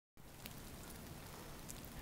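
Faint steady hiss of heavy snow falling, with a few light ticks.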